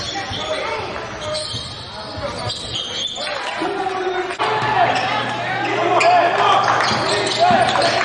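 Live basketball game sound in a gym: the ball bouncing on the hardwood, sneakers squeaking and players' and coaches' voices ringing in the hall. It gets louder about halfway through.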